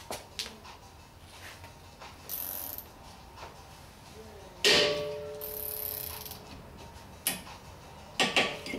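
Ratchet wrench tightening the centre bolt of a brake-rotor puller against a rust-seized rotor, its pawl clicking in short runs. A loud sharp metal clank with a brief ring comes a little past halfway, and a lighter knock follows near the end.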